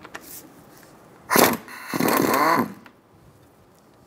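Powered ratchet with an 11 mm socket spinning out the brake-line union bolt from the brake caliper, in a short run of about a second and a half, starting sharply and then running steadily.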